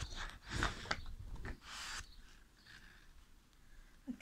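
A heavy carved mudrock stone moved about by hand on a table: a few short knocks and scrapes in the first second or so, and a breathy exhale near the middle, then quieter handling.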